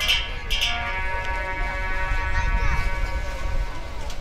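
Harmonium playing sustained chords between sung lines, with two short percussion strokes at the very start.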